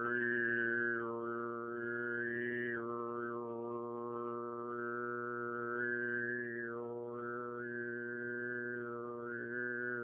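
Tuvan sygyt throat singing: a steady low vocal drone with a high, whistling overtone melody above it. The whistle dips and returns several times in one long held breath.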